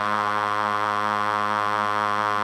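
Electronic dance music with the beat dropped out: one sustained synthesizer tone held steady, with no drums.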